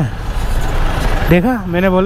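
Traffic and road noise from a Yamaha R15 V3 motorcycle moving slowly among cars and a bus, as picked up by a helmet mic. A man's voice comes in after about a second and a half.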